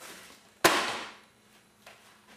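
A single sharp bang about two-thirds of a second in, fading out over about half a second.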